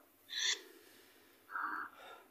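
Two short breathy voice sounds about a second apart, a quick exhale and then a brief hum-like murmur, over a phone line.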